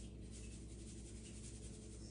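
Quiet indoor room tone: a faint, steady low hum with light background hiss and no distinct events.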